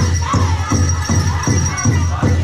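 Powwow drum group singing a Grand Entry song. The big drum keeps a steady beat of about three strokes a second under the high singing voices.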